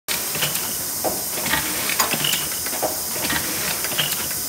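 Bobst SP 1080 E automatic flatbed die-cutter running: a steady hiss with repeated short clicks and knocks from its mechanism.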